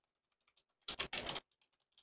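Typing on a computer keyboard: light, irregular key taps, with two louder short noises about a second in.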